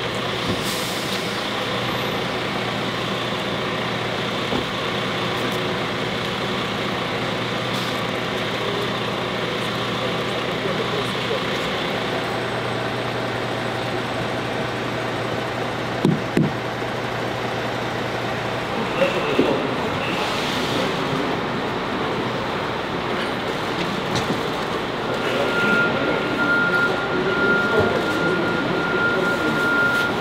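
Indistinct voices over a steady vehicle engine hum, which stops about two-thirds of the way through; a steady high tone sounds near the end.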